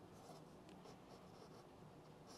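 Near silence, with faint scratching of a pencil writing on a paper sheet on a clipboard.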